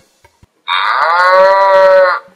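VTech 'Lustige Fahrschule' toy steering wheel playing a recorded cow's moo through its small speaker: one long moo starting just over half a second in and lasting about a second and a half, rising slightly at its onset and then held steady.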